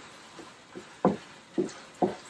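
A utensil scraping and knocking against a skillet while stirring a thick, creamy ground beef and canned soup mixture. There are about four short strokes, the loudest a little after one second in.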